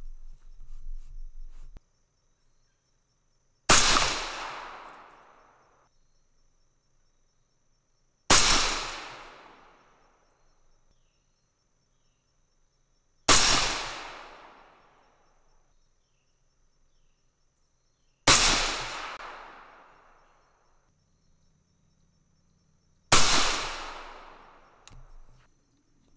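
Five rifle shots from an AR-style rifle chambered in 6mm ARC, fired about five seconds apart, each followed by an echo that dies away over about two seconds. The rounds are handloads of 108-grain Hornady ELD-M bullets over 29.7 grains of CFE 223 powder.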